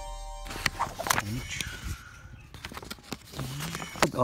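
The tail of an electronic intro music sting cuts off about half a second in. It is followed by scattered clicks and rustles of fingers handling a vehicle registration sticker sheet close to the phone's microphone.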